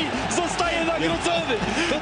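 A Polish TV football commentator talking over the steady noise of a stadium crowd.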